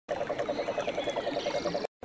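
A frog calling in a fast, even series of croaks, about nine a second, with faint high whistling calls behind it. It cuts off suddenly just before the end.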